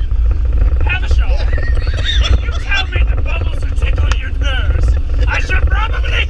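Air-cooled Volkswagen Beetle flat-four engine running as the car is driven, heard from inside the cabin as a steady low rumble. Two men laugh loudly over it from about a second in.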